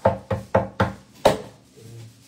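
A hand striking a tabletop in quick chopping blows: five knocks about four a second, the last one the hardest, about a second and a quarter in.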